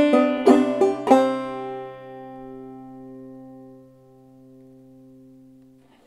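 Clawhammer banjo: a quick phrase of plucked notes ending in a brushed strum-thumb chord on G, which then rings and slowly fades for several seconds.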